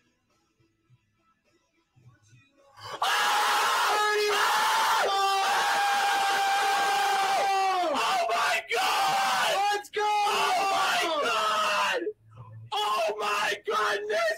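Near silence for about three seconds, then young men screaming and yelling together in excitement over pulling a one-of-one card, with long held shouts, a brief break near the end, and more yelling after it.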